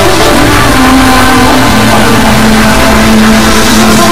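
Loud hardcore electronic music in a breakdown: the heavy low beat drops back and a distorted, engine-like held synth tone carries the track, stepping down in pitch about halfway through.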